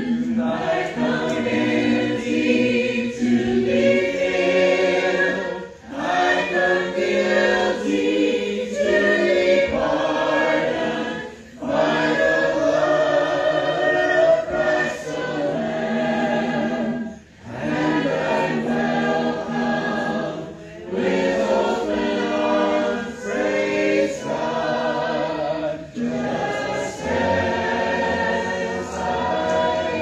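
Church congregation singing a hymn together in parts, unaccompanied, with short breaks between sung lines about every five seconds.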